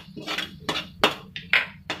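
Steel spatula scraping and clinking against a metal kadhai while stirring a wet onion-spice masala: about six short strokes, roughly three a second.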